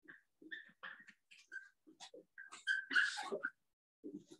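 Dry-erase marker writing on a whiteboard, making a string of short squeaks and taps as the strokes are drawn, loudest about three seconds in.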